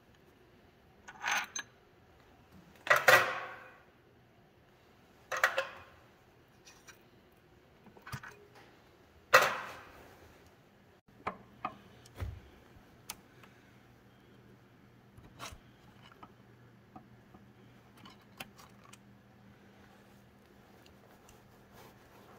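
Loose steel parts clinking and clanking while bearing-cap bolts and fold-over lock tabs are removed by hand: four sharp metallic clanks in the first ten seconds, then lighter clicks and a dull thud, and a few faint ticks.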